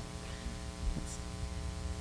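Steady electrical mains hum from the sound system in a gap between speakers, with a faint tap near the middle.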